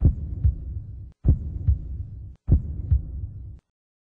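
Outro sound effect: three deep double thumps about 1.25 s apart, each a strong thump followed by a second one about half a second later, over a low rumble, stopping about three and a half seconds in.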